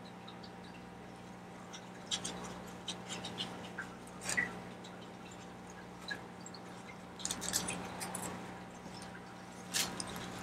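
Light scattered rustles and clicks of gloved hands handling a seedling and its plastic net pot, over a steady low hum.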